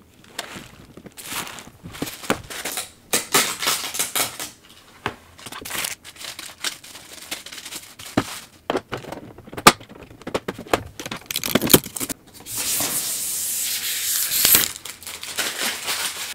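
Plastic packaging bag and protective sheet being pulled off a robot vacuum's docking station: irregular crinkling and rustling, with a few sharp knocks as the plastic dock is handled and a longer continuous rustle about two-thirds of the way through.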